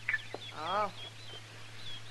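Farmyard sound effect in an old radio-drama recording: a chicken gives one short cluck about half a second in, over faint high bird chirping and a couple of light clicks.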